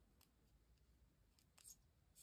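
Near silence, with a few faint, short ticks and rustles from a darning needle and yarn being worked through a button and crochet fabric.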